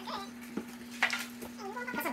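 A whisk stirring brownie batter in a stainless steel mixing bowl, with light clinks and short squeaks of metal scraping against the bowl, over a steady low hum.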